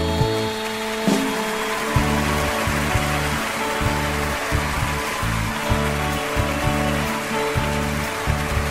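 A live band plays an instrumental passage of a romantic ballad: a stepping bass line under sustained chords, with a steady rushing noise behind the music.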